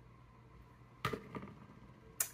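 Quiet room, then two short knocks about a second in, a third of a second apart, as an object is handled.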